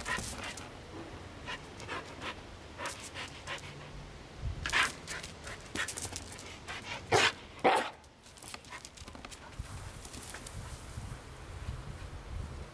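Husky panting excitedly, with a few short sharp sounds from it; the loudest two come close together about seven seconds in.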